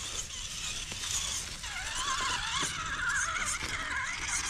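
Axial Capra UTB18 RC crawler's electric motor and gears whining, the pitch rising and falling with the throttle from about halfway through, over the crunch of its tyres on dry leaves and sticks.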